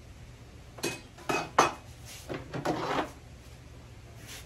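Metal hand tools clinking and rattling as they are picked up and handled: three sharp clinks, then a rattle lasting under a second.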